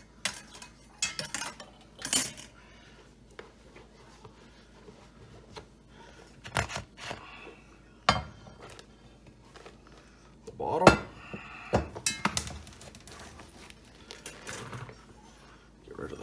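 An enamelled cast-iron Dutch oven and a metal wire cooling rack being handled: scattered clinks and knocks of metal against metal and the countertop. The loudest knocks come about two thirds of the way in, as the pot is tipped and the baked loaf is turned out onto the rack.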